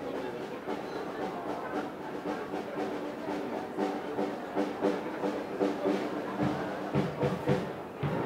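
A brass band playing, with regular drum beats that come through more strongly in the last couple of seconds.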